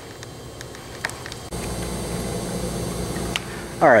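Quiet background at first, then about a second and a half in a steady low machine hum comes in suddenly and holds without change.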